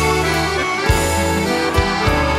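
A live band playing an instrumental passage of a gaúcho-style song, led by a piano accordion over guitars and bass, with a kick drum thump about once a second.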